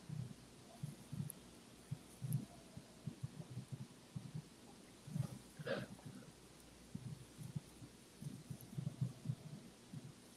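Faint, irregular soft low thuds and breaths picked up close to video-call microphones while tasters nose bourbon glasses, with one louder breath about six seconds in.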